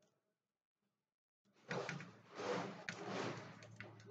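Handling noise from laptop parts being worked by hand: plastic casing and cables rustling and scraping, with a few small sharp clicks over a low steady hum. It starts suddenly about a second and a half in, after silence.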